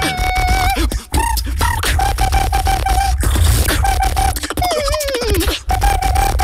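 Two-person tag-team beatbox routine: deep vocal bass and sharp mouth-percussion clicks under a hummed tone repeated in short pulses, with a falling pitch glide about five seconds in.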